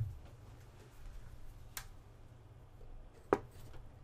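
Clicks of a barrel power plug being handled and pushed into the DC power jack of a Terasic DE10-Nano board: a light click just under two seconds in and a sharper, louder one near the end, over a low steady hum.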